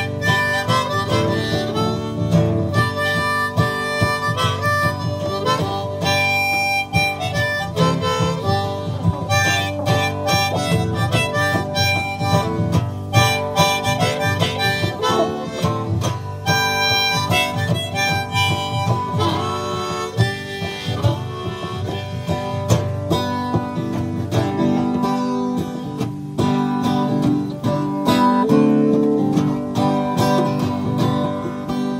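Harmonica solo played over a strummed acoustic guitar, the instrumental break of a folk-rock song.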